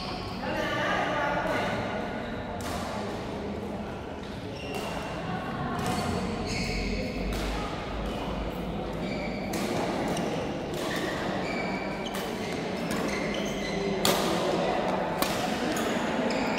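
Badminton rally: rackets strike the shuttlecock in sharp hits every one to two seconds, echoing in a large hall, with the sharpest hits near the end.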